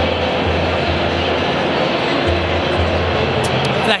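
Crowd chatter from many people talking at once, with music playing over it and its bass notes coming through strongly.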